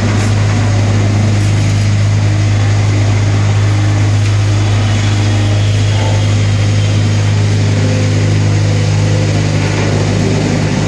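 Vibrating table of a concrete tile-making machine running: a loud, steady low hum with no change in pitch.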